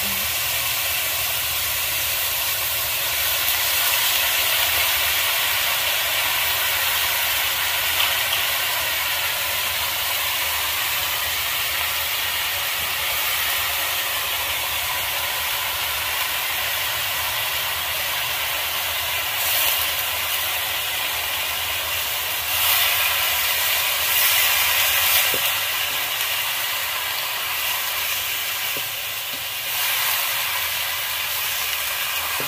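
Meat and then greens frying in an iron wok over a wood fire: a steady sizzling hiss, with a few louder swells of hiss in the second half.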